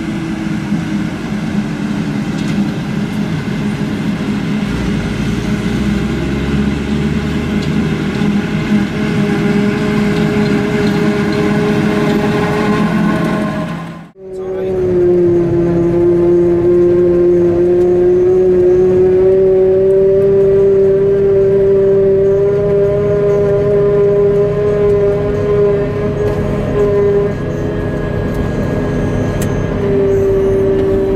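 Claas Jaguar 950 self-propelled forage harvester running at work, picking up a grass swath. At first it is heard from the field as it comes toward the microphone. After an abrupt cut about halfway through, it is heard from inside its cab as a steady hum with a strong, even whine over it.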